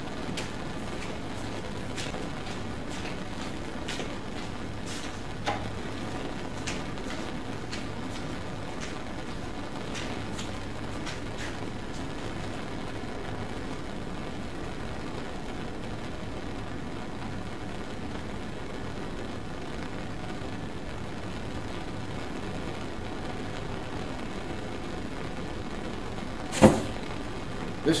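Steady hiss of a Bunsen burner flame with a few faint clicks. Near the end comes one short, sharp pop as the hot glass rod touches the guncotton (nitrocellulose) and it ignites in a flash.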